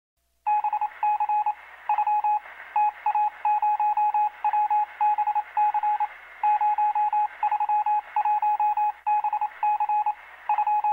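An electronic beep tone switched on and off in a rapid, irregular pattern of short and long beeps, starting about half a second in. It has a thin, phone-line sound.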